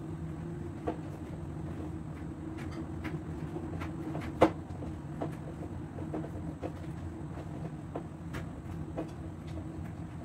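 Light clicks and taps of cloth napkins and napkin rings being handled on a table, with one sharper click about four and a half seconds in, over a steady low hum.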